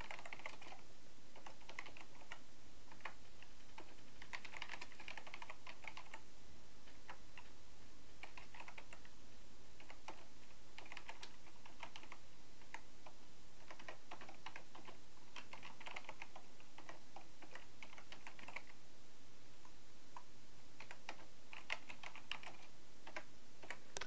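Typing on a computer keyboard: runs of quick key clicks broken by short pauses.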